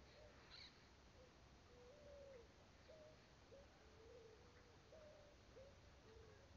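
Faint bird calls: a string of short, low, pure notes, one or two a second, some sliding up or down in pitch, over near-silent outdoor quiet.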